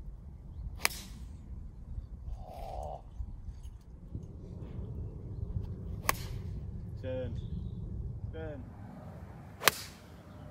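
Golf irons striking balls off the tee: three separate sharp cracks, about a second in, about six seconds in, and near the end, the last the loudest.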